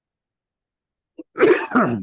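A man's short cough clearing his throat, in two quick parts, starting about a second and a half in.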